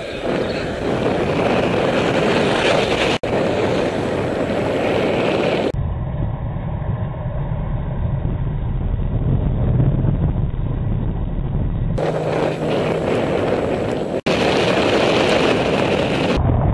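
Steady wind rush on a bicycle-mounted camera's microphone while riding along a road, with road noise under it. Two brief dropouts break it where clips are joined, and the middle stretch sounds duller.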